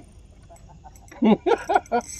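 A person laughing in four short, loud bursts, starting a little after a second in.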